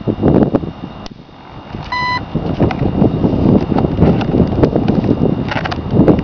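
Wind buffeting the microphone, with a single short electronic beep about two seconds in from the RC flying wing's speed controller as its battery packs are connected.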